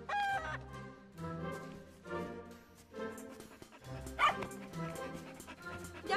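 Light background music, with two short yips from a small cartoon puppy: one at the start and one a little after four seconds in.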